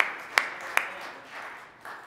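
Hands clapping in praise: three sharp claps in the first second, then lighter clapping that trails off.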